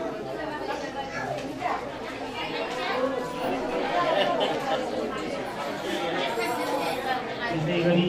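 Indistinct chatter of many people talking over one another in a large room, with no single voice standing out.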